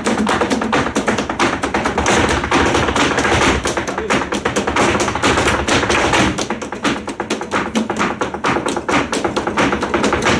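Flamenco zapateado: rapid heel and toe strikes of a dancer's shoes on a wooden stage floor, with palmas hand-clapping and flamenco guitar accompaniment.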